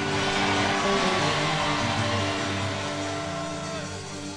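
Soft background music of sustained, held chords, slowly fading, with a note shifting near the end.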